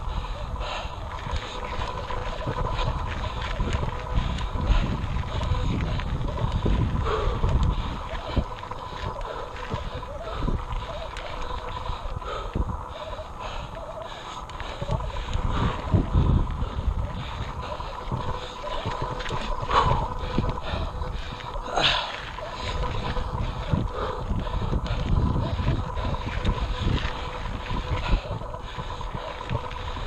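Mountain bike climbing a rocky dirt singletrack: a continuous rumble of wind and tyres on the microphone, broken by scattered sharp knocks and rattles as the bike rides over rocks.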